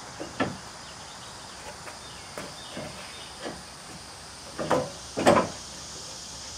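Scattered knocks and clicks of hand work among parts in a pickup's engine bay, a few light ones and then two louder knocks near the end, over a steady faint high hiss.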